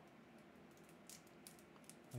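Near silence with a few faint clicks and ticks as cardboard and plastic card packaging is handled.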